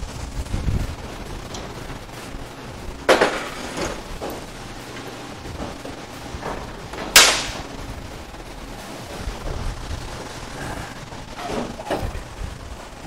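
Sharp metal clanks and knocks as a steel transmission-mount bracket is worked loose and pulled out from under a car. Two loud clanks come about three seconds in and about seven seconds in, with lighter knocks between.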